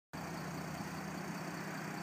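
2012 Mercedes-Benz E350 BlueTec's 3.0-litre V6 turbodiesel idling steadily and very quietly.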